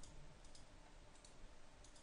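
Near silence with a few faint computer mouse button clicks as a line is offset in the drawing.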